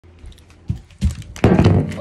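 Knocks and rubbing of a phone being handled and set down, right on its microphone: two short thuds in the first second, then a louder stretch of handling noise.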